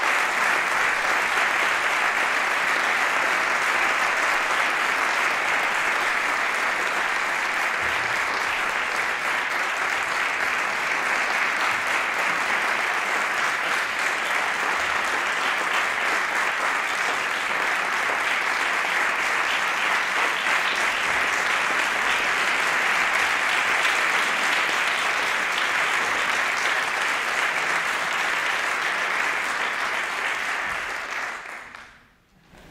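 Audience applauding steadily in a concert hall.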